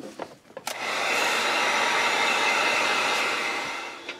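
Heat gun blowing steadily, drying the fresh airbrushed paint on a lipless crankbait. It starts with a click a little under a second in and trails off near the end.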